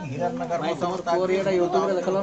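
Several people's voices overlapping, with some sounds drawn out into long held notes.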